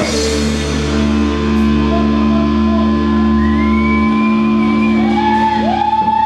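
Live rock band with electric guitars and bass holding a sustained chord that rings out, its low bass note stopping about two-thirds of the way through. A bending, gliding melody line comes in about halfway.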